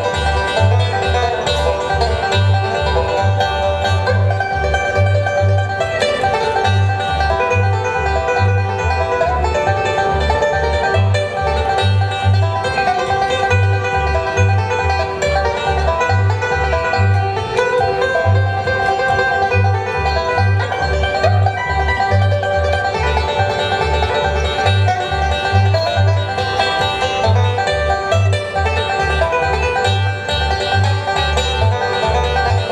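Resonator banjo picked without a break through an instrumental tune, over a steady beat of low bass notes from an accompanying instrument.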